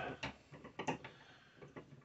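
Turret of a Lee Classic Turret Press being turned by hand: a few light clicks and knocks, the clearest a little under a second in.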